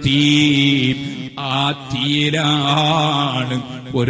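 A man's voice chanting a melodic Arabic recitation, holding long drawn-out notes that waver slowly in pitch, in the style of Quran recitation within a sermon.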